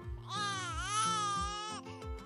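A baby's cry: one drawn-out wail of about a second and a half that dips in pitch and rises again, over background music with a steady beat.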